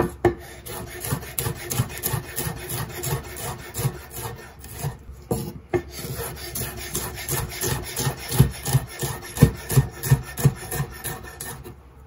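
Chef's knife chopping red pepper on a wooden cutting board: a quick, continuous run of blade knocks against the wood, several a second, with some harder strikes in the later part.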